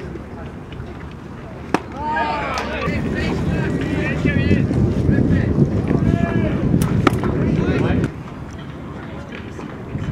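A baseball popping sharply into a catcher's mitt twice, about five seconds apart. Between the pops come players' shouted calls, and wind rumbles on the microphone from about three seconds in until it cuts off suddenly near the end.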